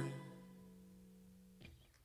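A band's final chord ringing out on guitar and dying away to near silence, with a faint knock near the end.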